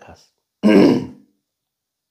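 A man clears his throat once, a short rough burst of about half a second, coming just after he finishes a word.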